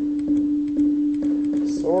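Steady synthesized sine tone from the speakers, transposed down a musical fifth by a delay line whose delay time keeps changing, with a faint click about every half second where the delay is retriggered. A voice starts near the end.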